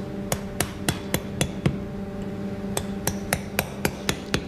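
Round mason's mallet striking a steel chisel into a block of building stone, as the first cuts toward the basic shape. There are two runs of about six sharp blows, roughly four a second, with a pause of about a second between them.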